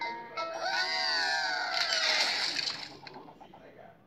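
Cartoon soundtrack: a wordless vocal exclamation that rises and then falls in pitch over about a second and a half, over music, with a hissing burst of noise from about two seconds in that fades out.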